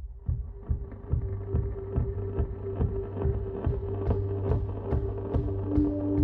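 Background music fading in, with a steady beat and a long held note that slowly build in loudness.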